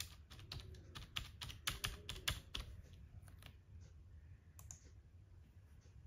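Computer keyboard keys being typed as a string of digits is entered: a quick run of key presses for the first couple of seconds, then a few single presses.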